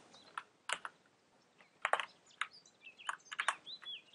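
Computer keyboard typing: a dozen or so light, irregular keystrokes.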